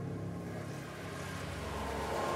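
Dark film soundtrack: a low sustained drone with a hissing swell that builds toward the end.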